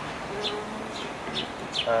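Small birds chirping: several short, high notes, each falling slightly in pitch, a few tenths of a second apart. A man's voice begins with an 'um' near the end.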